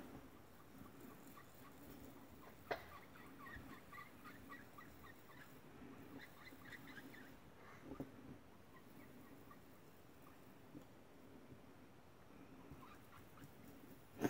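Near silence, with a couple of faint soft taps from a foam ink blending tool being dabbed onto paper, one about a third of the way in and one past the middle.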